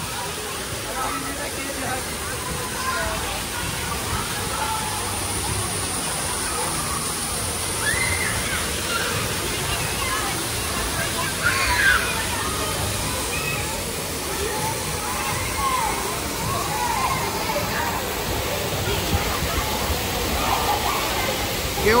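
Steady rush of water pouring from a mushroom-shaped splash-pad fountain into a shallow pool, with children's voices calling out over it.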